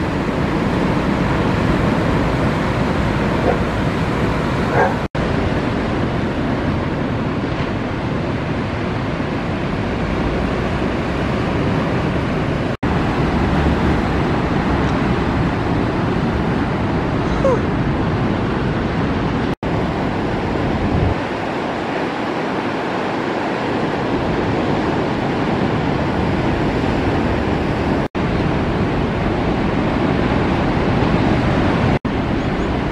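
Ocean surf washing onto a beach, a steady rushing wash of breaking waves that cuts out for an instant four times where clips are joined. A few faint short calls sit over it.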